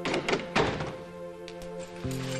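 A few heavy thuds in the first second, then fainter knocks, in a break in a sustained dramatic music score.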